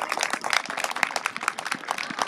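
Scattered hand clapping from a small group of spectators, many quick, irregular claps with no steady rhythm, applauding a goal.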